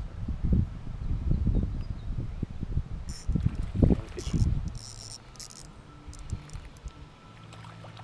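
Water lapping against a boat's hull, with uneven low buffeting on the microphone. A few short, high rattling clicks come around the middle. After about five seconds it settles to a quieter stretch with a faint steady hum.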